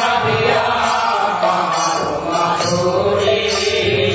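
Group of devotees singing a devotional kirtan chant together, with the metallic jingling of small hand cymbals keeping time.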